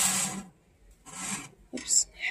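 Rasping scrapes of a metal dome heat lamp being shifted on the wire-mesh screen top of a reptile enclosure: one scrape fading out about half a second in, and a shorter second one about a second in.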